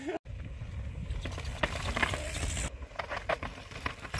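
Low rumble of wind on the microphone, with scattered clicks and crunches from a mountain bike rolling over a rocky dirt trail.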